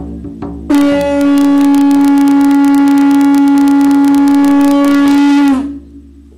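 A frame drum struck a few times, then a conch-shell trumpet (caracol) blown in one long loud held note for about five seconds, its pitch sagging as it ends, while the drum keeps up a fast even beat of about seven strokes a second.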